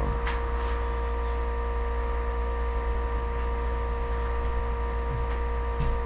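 A steady low hum with a few fixed higher tones, even and unchanging throughout.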